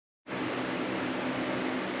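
Steady hum and hiss of a fan-like background noise, starting suddenly about a quarter second in.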